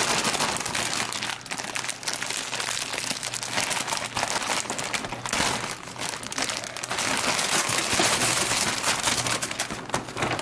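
Plastic candy bag and wrapped candies crinkling and crackling as the candies are poured into a paper bag. A dense rustle runs throughout and grows loudest about three-quarters of the way through.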